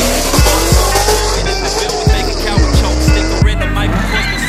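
Cars accelerating hard in a street race, the engine note rising and then holding, with tyre squeal over the top, all mixed with hip-hop music with a heavy beat. The car sound cuts off abruptly shortly before the end.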